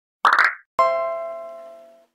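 Intro logo sound effect: a short burst of quick pops, then a single ringing chime note that starts suddenly and fades out over about a second.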